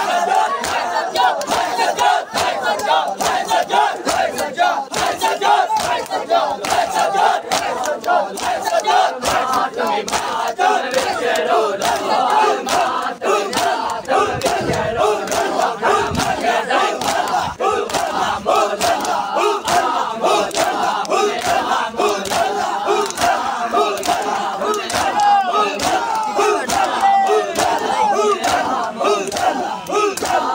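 A large crowd of male Shia mourners calling out together during matam, with many sharp slaps of hands striking chests throughout.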